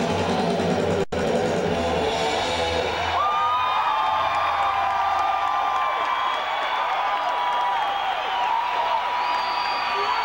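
Live heavy metal band playing, recorded from the audience, with a momentary dropout in the sound about a second in. About three seconds in the bass and drums fall away, leaving long held, bending high notes over crowd cheering.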